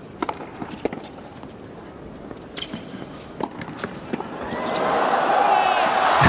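Tennis rally: sharp racket-on-ball strikes at irregular intervals over a low crowd hush, then the crowd's noise swells from about four and a half seconds in as the point builds.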